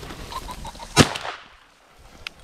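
A single shotgun shot about a second in, sharp and loud with a short trailing echo. Just before it come a few short, high calls.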